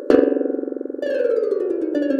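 Bounce Metronome Pro's sonified pendulum wave: synthesized notes, one per bouncing ball, each pitched on a harmonic of the harmonic series. Just after the start all the balls land together and sound as one loud chord of harmonics that rings on; about a second in, the notes separate again into a fast rippling polyrhythm.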